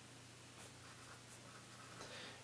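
Faint sound of a pencil writing on a sketchbook page.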